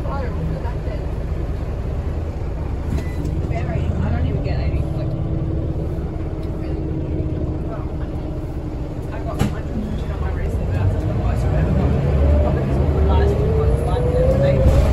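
Scania L94UB city bus heard from inside the saloon, its Scania DC9 engine and ZF Ecomat automatic gearbox giving a steady low rumble. A steady whine holds through the middle, a single sharp click comes a little after halfway, and a whine rises steadily in pitch near the end as the bus picks up speed.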